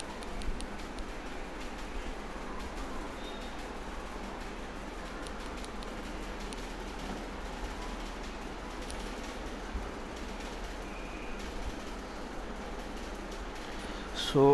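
Steady background hiss with a few faint, scattered clicks from a computer keyboard and mouse as a value is typed in.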